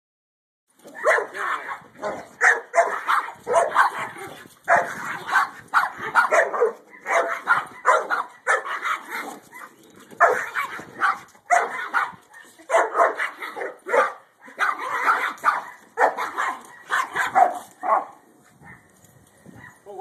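Dogs barking in rapid, almost unbroken runs of barks during rough play, stopping about two seconds before the end.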